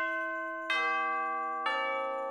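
Bell-like chimes in background music, a new ringing chord struck about once a second, each one ringing on as the next comes in.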